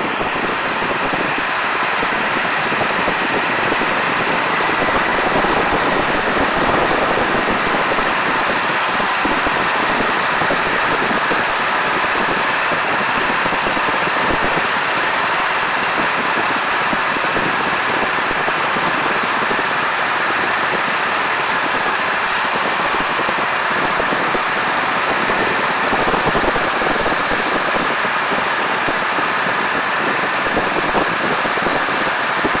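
Biplane engine running steadily in flight, under a constant rush of wind past the wing.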